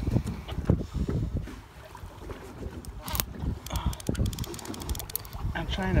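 Wind buffeting the microphone on a small boat at sea, a rumble with irregular low thumps over the sound of the water. About halfway through comes a quick run of fine clicks.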